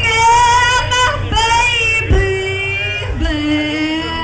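A woman singing a phrase of long held notes that step down in pitch, with short breaks between them, over the band playing quietly underneath.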